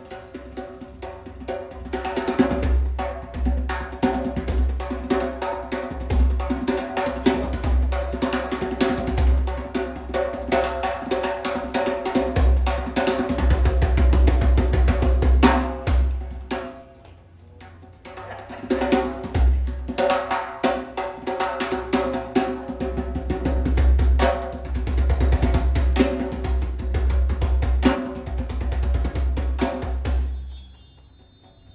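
Live instrumental band music, driven by busy drums and percussion over acoustic guitar and lap slide guitar. About halfway through it drops back almost to nothing for a second or so, then comes in again at full strength.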